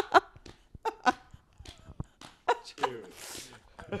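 Men laughing close to handheld microphones, in short breathy bursts and wheezes, with a breathy hiss about three seconds in.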